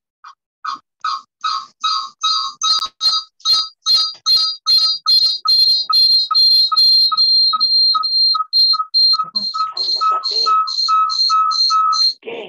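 A high, whistle-like tone pulsing at a steady pitch about three times a second, growing louder over the first few seconds and then staying loud.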